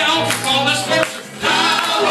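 Live gospel worship music: a man singing into a microphone with group voices and instrumental backing, which dips briefly between phrases a little over a second in.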